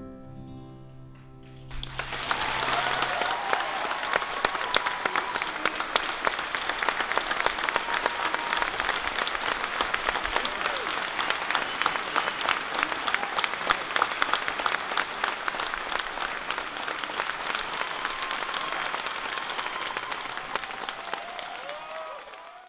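The last held chord of the music, with piano, dies away, then about two seconds in a theatre audience breaks into loud, sustained applause.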